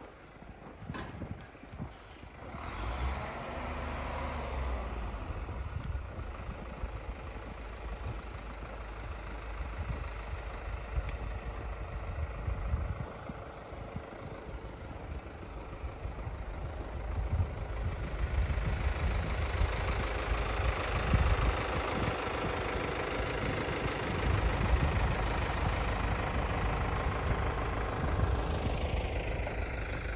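Farm tractor's diesel engine running as it works the ice surface of an outdoor rink. The sound starts about two seconds in and grows louder as the tractor drives toward the listener.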